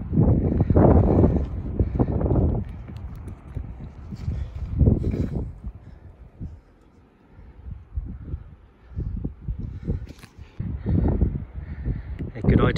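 Wind gusting irregularly on a phone's microphone, loudest near the start, around five seconds and again late on, with a few scuffs and knocks from scrambling over rock.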